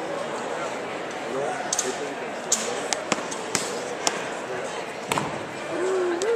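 Background chatter of spectators in an indoor fieldhouse, with about six sharp knocks scattered through the middle of the stretch.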